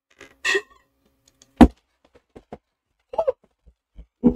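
A quick sip through a plastic straw from a fountain-drink cup, then a single sharp knock about a second and a half in, a few faint clicks, and a short vocal sound a little past three seconds.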